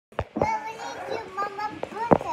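Small children's voices: drawn-out vocal sounds without clear words, after two quick knocks right at the start.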